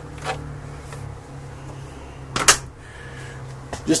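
An RV refrigerator door being shut: one sharp knock about two and a half seconds in, with lighter clicks near the start and end, over a steady low hum.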